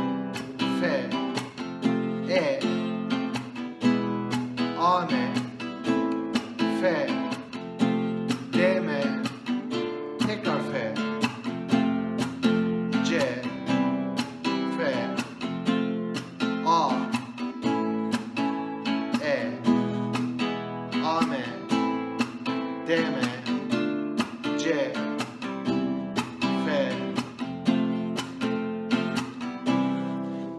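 Nylon-string classical guitar strummed steadily in a repeating rhythm, changing between open chords as a chord-transition exercise.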